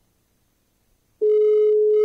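Near silence, then about a second in a loud, steady telephone tone: one long, even beep on the line.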